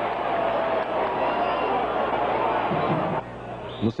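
Football stadium crowd noise, a steady din of many voices, that drops away suddenly a little past three seconds in. A man starts speaking near the end.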